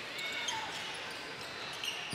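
Live basketball game sound in a gym: a steady crowd murmur with a few faint ball bounces and short sneaker squeaks on the hardwood.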